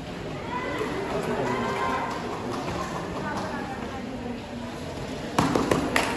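Voices in a large, echoing hall, then about five seconds in a quick cluster of sharp slaps and thuds as a Shorinji Kempo practitioner is thrown and lands on the foam mat.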